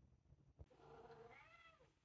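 A long-haired tabby cat giving one faint meow about a second long, its pitch rising and then falling, just after a small click.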